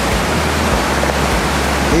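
Steady, loud rushing of a river running through a snowy gorge, an even hiss spread across low and high pitches.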